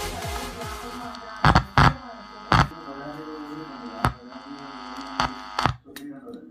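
Electronic dance music played through a TDA2030 amplifier and speaker fades out in the first second, leaving a steady mains hum from the speaker. Six loud, sharp pops come through the speaker over the next few seconds as the input lead is handled.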